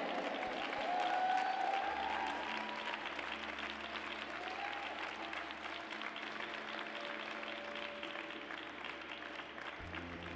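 Arena audience applauding, loudest about a second in and slowly dying down.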